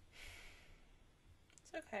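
A woman's short, soft breathy sigh, a quiet exhale lasting about half a second, followed near the end by her starting to speak.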